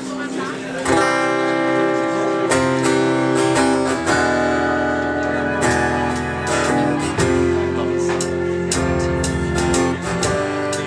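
A live rock band playing a song's instrumental opening. Electric guitar chords start about a second in, changing every second or two, with bass notes and drum hits underneath.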